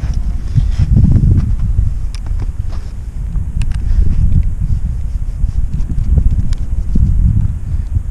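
Wind buffeting the microphone, a loud uneven low rumble, with a few faint clicks of hard plastic parts as a 3D-printed mount is fitted to a small drone.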